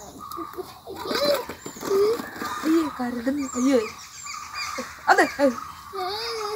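People's voices making short exclamations and wordless vocal sounds, rising and falling in pitch, with a louder outburst about five seconds in.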